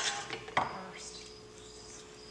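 Film reel pushed onto the keyed shaft of a film rewind: a light click at the start and a sharper clack about half a second in, over a faint steady hum.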